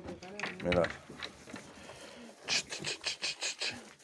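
A lamb sucking hard at a feeding bottle's teat: a quick run of wet sucking and slurping sounds, about six a second, about halfway through, with milk splashing over its face.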